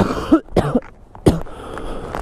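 A man coughing: three short, sharp coughs in quick succession. He calls it just a small cough.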